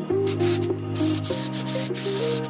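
Air-fed gravity spray gun hissing as it sprays paint onto a steel panel, heard under background music with held notes that change pitch every half second or so.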